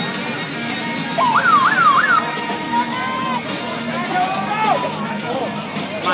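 A siren-like wail that rises and falls quickly about four times, then holds one steady tone for about a second, with a shorter rising and falling wail a couple of seconds later, over loud background music from a public-address system.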